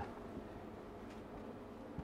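Faint steady background hum with a few thin steady tones and no distinct event: room tone.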